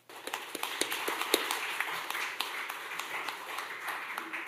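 Audience applauding, starting abruptly and continuing steadily.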